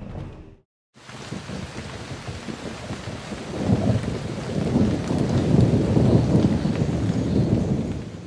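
Rain-and-thunder sound effect for an animated logo sting. After a brief dead silence, a rain-like hiss starts about a second in and swells into a deep rumble from about three and a half seconds.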